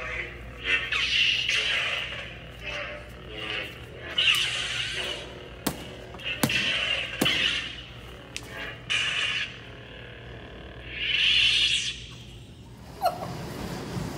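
Toy lightsaber being swung: a string of short hissing swooshes, about a second each, over a steady low hum, with a few sharp clicks near the middle.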